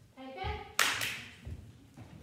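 A single sharp hand clap about a second in, echoing briefly in the studio.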